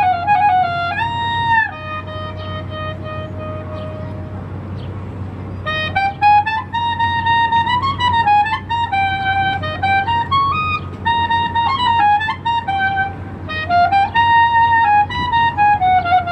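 Clarinet playing a solo melody: a softer held note for a few seconds, then quick phrases of changing notes from about six seconds in.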